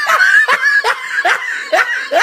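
A person laughing in a run of short, snickering bursts, about two or three a second.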